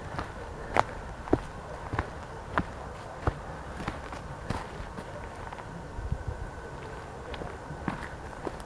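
Footsteps on a dry, stony dirt trail, a sharp step every half second or so.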